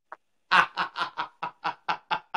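A man laughing heartily in a quick run of short ha-ha bursts, about five a second, starting about half a second in.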